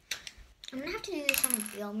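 A bright metallic clink of small hard objects, with a girl's voice starting partway through and ending in one long drawn-out note.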